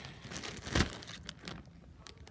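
Clear plastic bag crinkling as it is handled and small plastic toy figures are put into it, with one louder crackle just under a second in.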